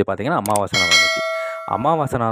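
A single bright chime from a subscribe-button animation's bell sound effect. It strikes about three-quarters of a second in and rings on in several steady tones, fading over about a second.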